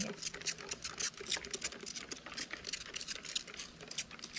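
Hand-pumped trigger spray bottle of hydrogen peroxide squirting rapidly: a quick run of short hisses, about five a second, thinning near the end. The bottle is nearly out of peroxide.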